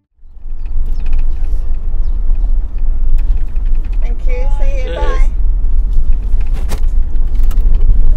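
Deep, steady road and engine rumble inside a moving camper van's cab, with a single sharp click near the end.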